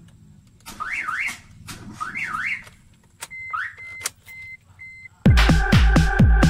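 Car alarm siren sounding in two short bursts of fast up-and-down sweeps, then a shorter sweep and four short high beeps. Electronic dance music with a heavy beat cuts in about five seconds in.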